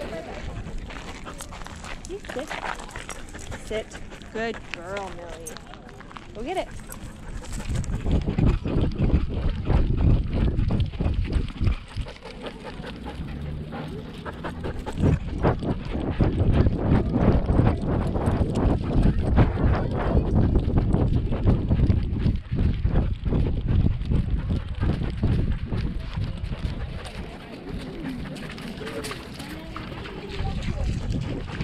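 Action camera strapped to a running Siberian Husky: from about eight seconds in, wind buffets the microphone over dense thumps and jostling from the dog's gait and harness. This comes in two long spells with a quieter lull between.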